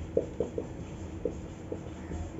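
Marker pen writing on a whiteboard: a handful of short, irregular squeaks and taps from the pen strokes.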